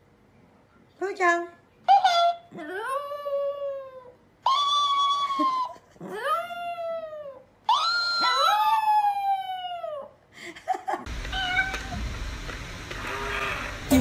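A Chihuahua howling: a run of yowling calls that each slide up and then fall in pitch, the first ones short and the later ones drawn out for a second or more. About eleven seconds in, the howls give way to a steady noisy background.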